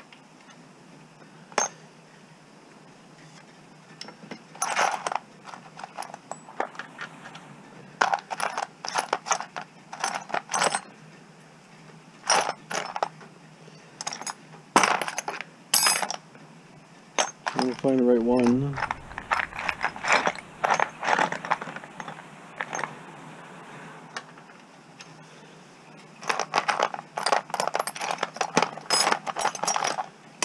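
Loose steel screwdriver bits and sockets clinking and rattling against each other in a plastic tray as they are picked through, in irregular bursts with pauses between. A short wavering tone sounds a little past halfway.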